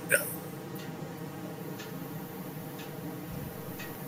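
A brief spoken "yeah" at the start, then quiet room tone over a video-call microphone: a low steady hum with a few faint ticks.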